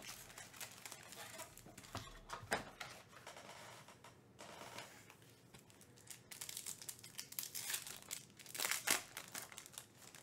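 Foil trading-card pack wrappers crinkling in irregular bursts as they are handled, loudest near the end as a pack is torn open.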